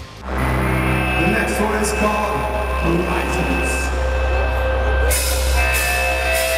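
A live metal band on stage, holding sustained chords over a steady, heavy low drone rather than playing a beat. A bright hiss joins the top of the sound about five seconds in.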